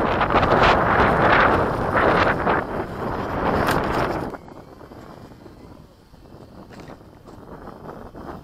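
Wind buffeting the microphone in heavy gusts, which drops away suddenly about four seconds in, leaving a much quieter rush.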